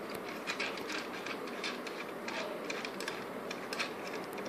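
Light irregular clicks and small scrapes of fingers undoing the finderscope mounting screws on a Celestron PowerSeeker 60AZ refractor tube, with small metal and plastic parts knocking against it.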